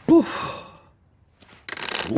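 A cartoon man's short exclaimed "Oh!" that trails off into a breathy sigh. Near the end comes a quick run of clicks.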